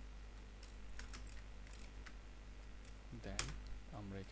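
Typing on a computer keyboard: scattered, irregular keystrokes, the loudest about three and a half seconds in.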